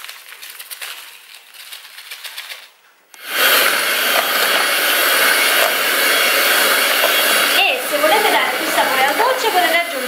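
Faint rustling of a paper sachet of baking powder being emptied. About three seconds in, an electric hand mixer switches on abruptly and runs steadily, its twin beaters whisking runny chocolate cake batter in a plastic bowl.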